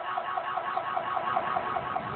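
Electronic siren warbling rapidly, about six even pulses a second at a steady level.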